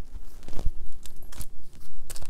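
A few sharp taps and light rustles of sticker sheets in plastic sleeves being picked up and handled on a desk.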